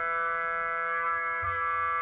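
Background music: a held chord of several steady tones, with a slight change in its texture partway through.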